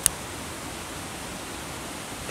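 Steady, even rushing background noise with no speech, and one short click just after the start.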